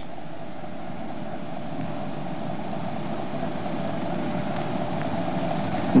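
Steady background hum and hiss from an old film soundtrack, with no speech, growing slightly louder towards the end.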